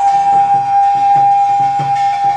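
Korean barrel drums (buk) beaten with sticks in a steady rhythm of about three strokes a second, under one long held high note.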